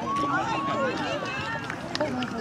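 Indistinct, overlapping voices of young children and adults talking and calling out at once.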